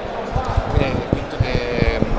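Handling noise from a handheld interview microphone: irregular low thuds as it is moved about, with voices of a surrounding crowd faintly behind.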